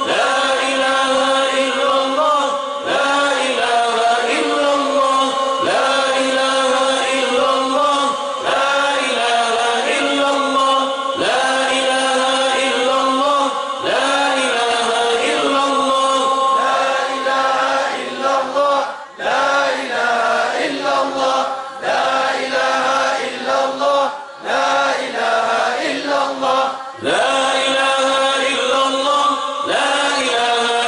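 Islamic dhikr chanted by men's voices, led by one voice through a microphone. A short melodic phrase is repeated about every three seconds.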